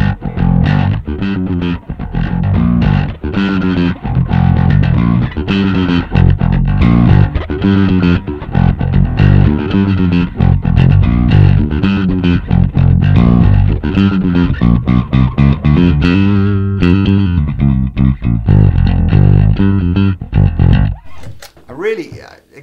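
Electric bass guitar playing a repeating riff through a Two Notes Le Bass tube preamp pedal set to its Cold mode. The playing stops about a second before the end.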